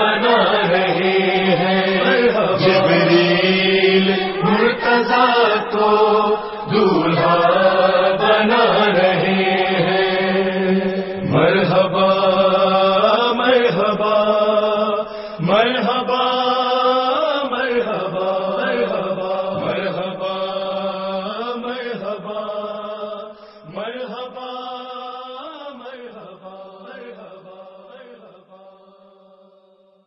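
Manqabat chanting: voices holding a slow, melismatic devotional chant over a steady low drone, fading out gradually over the last several seconds.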